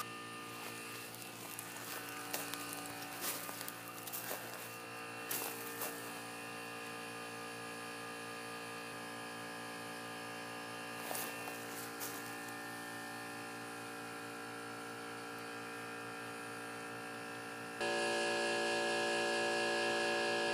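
Electric air compressor running with a steady buzzing hum, with a few clinks of handling early on. The hum steps up louder shortly before the end.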